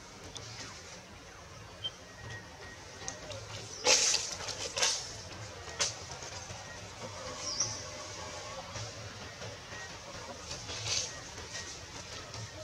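Steady outdoor ambience with a high hiss, broken by a few sharp clicks or cracks about four to six seconds in, and a single short high chirp just after the middle.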